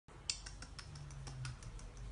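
A quick run of light, sharp clicks and taps, about five a second, as a hand pets a kitten standing on a plastic surface.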